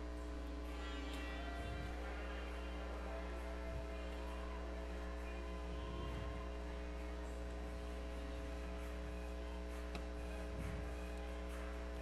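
Steady electrical mains hum on the audio feed, a constant low drone with fainter overtones.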